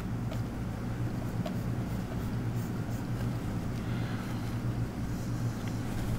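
Steady low hum with scattered faint clicks and light scratches of a stylus tapping and stroking a pen tablet while drawing.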